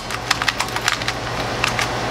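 Plastic 2x2 speed cube being turned by hand, its layers clacking in a quick, irregular series of clicks as its tension is tested; the tension is middling, neither too tight nor too loose.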